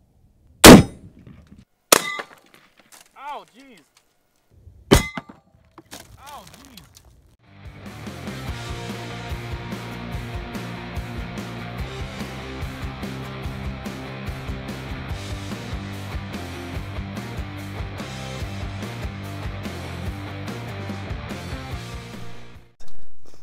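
A single rifle shot from a Mosin-Nagant firing a 7.62x54R PZ exploding round, less than a second in, followed by sharp ringing metallic bangs about two and five seconds in. From about seven seconds on, steady background music plays.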